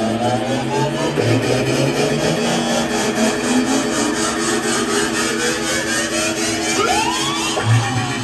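Electronic bass music from a live DJ set, played loud over a club sound system and recorded on a phone. Rising synth sweeps build over a steady fast pulse, ending in a heavy bass hit just before the end.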